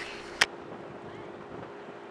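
Wind buffeting the microphone over the low steady hum of a large vehicle-carrier ship passing along the canal. A single sharp click comes about half a second in, and the low rumble falls away after it.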